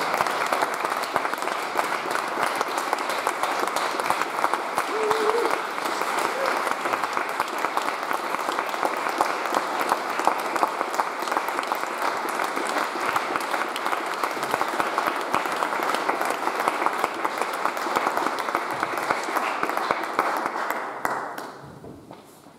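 Congregation applauding: steady, dense clapping that dies away near the end.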